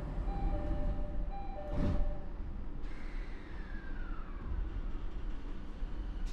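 Door chime of a JR East E217-series commuter car, two notes alternating, ending about two seconds in with a thump. A hiss then cuts off and a falling tone follows, over the steady low hum of the standing train.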